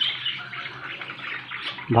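A cage of budgerigars chattering: a steady busy mix of high chirps and warbles.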